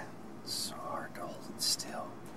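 A person whispering close to the microphone, with two hissing sounds, one about half a second in and one near the end.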